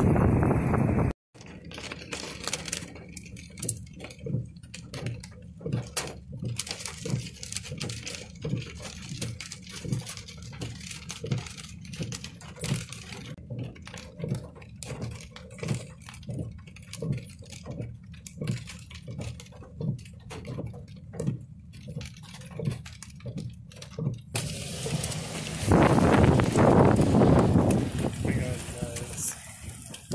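Wind on a phone microphone. The loud rush cuts off about a second in and returns as a strong gust near the end. Between the two, soft low thumps recur about twice a second.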